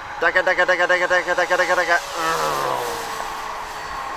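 A man's voice imitating a Spitfire's Merlin engine, a fast rhythmic "dugga dugga dugga" for nearly two seconds, then a falling note. A faint steady whine from the model's electric motor runs underneath.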